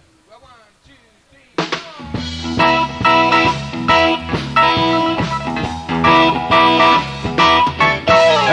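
A man's voice is heard faintly at first. About a second and a half in, a live rock band comes in suddenly and loudly with electric guitar, bass, drums and keyboards, playing the instrumental intro of a blues-rock song before the vocals start.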